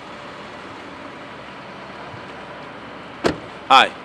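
A car door shutting once, a single sharp knock a little over three seconds in, over a steady outdoor hiss.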